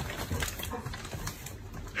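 Faint clicks and scuffs of a golden retriever's claws on a tile floor as it walks away.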